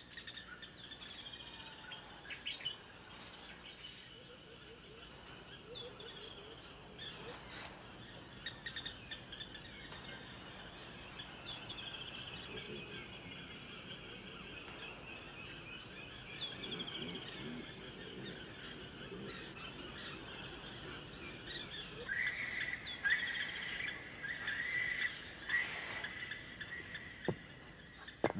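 Tropical forest ambience with many birds calling: overlapping chirps and short whistles, some lower calls here and there, and a run of short repeated calls near the end.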